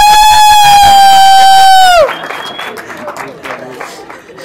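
A man's voice over a microphone and PA holding one long, loud, high-pitched shouted note that cuts off about two seconds in. Quieter crowd noise with some clapping follows.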